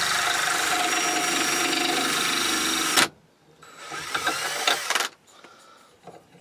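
Cordless drill running at full speed, spinning a softwood dowel blank through a dowel-making jig's cutter. It stops suddenly about halfway, followed by light clinks and rattles as the dowel is worked back out of the jig. The cutter is tearing chunks out of the softwood rather than cutting a clean dowel.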